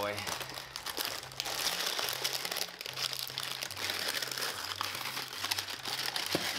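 Duct-taped cardboard box and paper lining being pulled and peeled away by hand: continuous crinkling and rustling of paper and cardboard.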